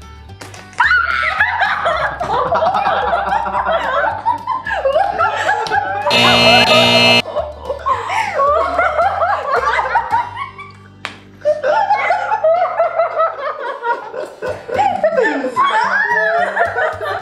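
Several people giggling and laughing in stifled bouts over background music with a steady beat. A loud buzzy tone lasting about a second cuts in about six seconds in.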